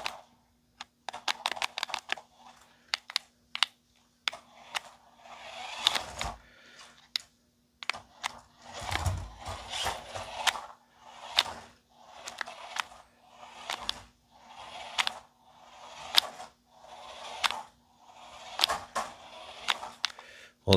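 Small electric motor and gears of a cheap 1:18-scale toy RC monster truck whirring in short bursts, about one a second, with sharp clicks, as it is driven back and forth on carpet.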